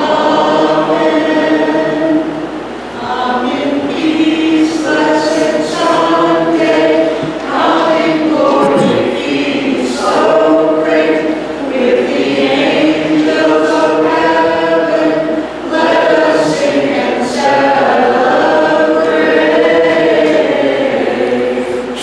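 Choir singing a hymn of the Maronite liturgy, with long held notes that shift in pitch every second or so.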